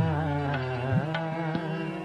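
Music: a Saraiki folk song in which a singer holds one long, slightly wavering note over a few drum strokes.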